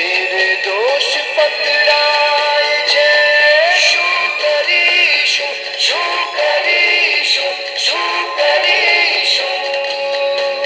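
Indian film song playing: a melody of long held notes with sliding pitch changes over backing music. The sound is thin, without bass, as if heard through a television's speaker.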